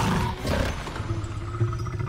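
Animated-film action soundtrack: a low rumble and sound effects with a held musical note, and a quick run of short repeated ticks near the end.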